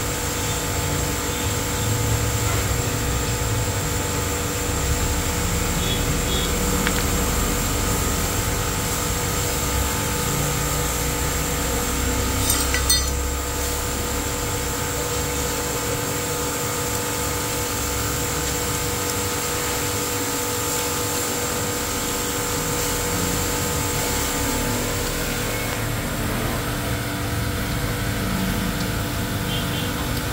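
A steady mechanical drone of running machinery with several held tones throughout. About 13 seconds in there is a brief metallic clink of a tool against the engine's exposed gears.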